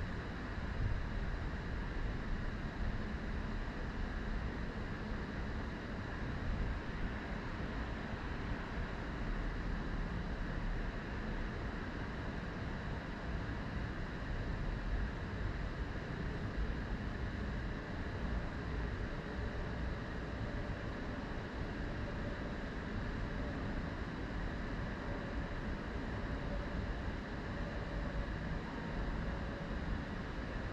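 Steady background noise: a constant low rumble with a faint hiss above it and no distinct events.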